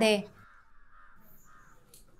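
A voice finishing a short plea, which ends about half a second in, then a quiet room with only faint background sounds.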